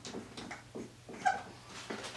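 Dry-erase marker writing on a whiteboard: a run of short, faint strokes, with a brief squeaky note about a second and a quarter in.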